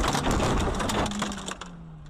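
A loud, dense burst of crackling and clattering noise that fades after about a second and a half. Under it a low hum slides slightly down in pitch.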